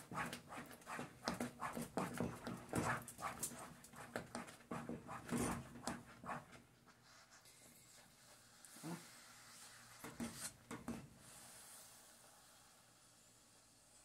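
Wooden spatula stirring a thick, cooked chocolate cornstarch pudding in a pot: quick scraping strokes, about three a second, for the first six seconds or so, then only a few soft sounds as the spatula is lifted out.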